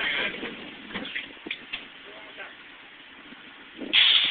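A lull of faint, steady fairground background noise with a few soft clicks and faint distant voices, after a voice fades out at the start; a loud voice cuts in near the end.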